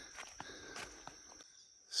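Faint outdoor background: a steady high-pitched insect drone with a few light ticks, dipping almost to silence just before the end.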